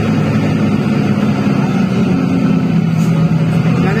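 Steady engine drone and road noise from inside a moving vehicle at highway speed, a continuous low hum whose pitch shifts slightly about halfway through.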